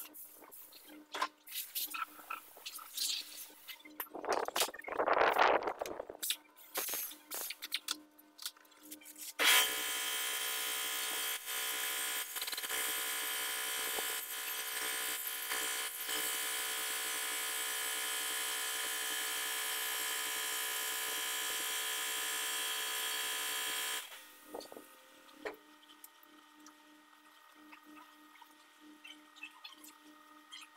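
A hand-held compressed-air tool running steadily under a car with a hissing whir for about fourteen seconds; it starts suddenly about ten seconds in and cuts off abruptly. Before and after it, scattered metal clinks and knocks of hand work on the underbody.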